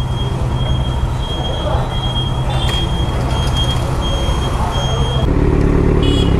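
Petrol pump dispensing fuel, a steady high whine over a rumble of traffic; about five seconds in it cuts to a louder motorcycle engine.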